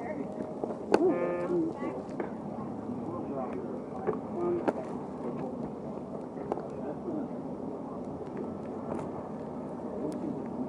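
Indistinct chatter of several voices in a busy room, with a few sharp clicks scattered through it and one nearer voice standing out about a second in.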